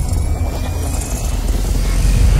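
Cinematic intro sound effect: a deep, steady low drone under a hissing noise bed, with a slight dip in level about a second in.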